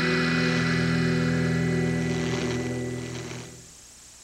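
A sustained closing chord of the promo's music, held and ringing out, fading away about three and a half seconds in. Faint steady tape hiss remains after it.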